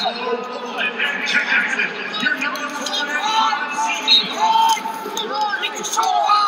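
Several people shouting at once from matside, the voices overlapping, during a college wrestling bout.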